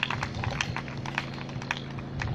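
Microphone handling noise: irregular small clicks and knocks as the microphone changes hands, heard over a steady low electrical hum from the sound system.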